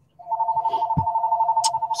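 Electronic telephone ringing: a two-tone trill pulsing about a dozen times a second, starting a moment in and carrying on. A soft knock about a second in.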